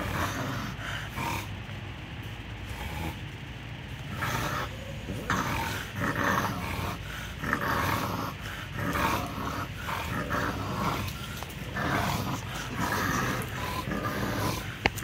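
Bulldog growling in play during a game of tug, a run of short, irregular growls that grows louder and more frequent from about four seconds in.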